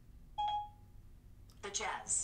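iPhone Siri chime: one short electronic tone about half a second in, signalling that Siri has stopped listening and is processing a spoken question. A voice starts speaking near the end.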